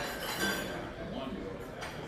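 Café background: a low murmur of other people's voices with china and cutlery clinking.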